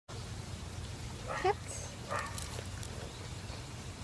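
A dog makes two short pitched vocal sounds, about a second and a half in and again just after two seconds, the first one the louder, over a steady low hum.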